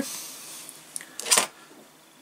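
Brief handling noise on a workbench: a faint click about a second in, then one short, sharp rustle as a hand moves over the parts and the paper booklet.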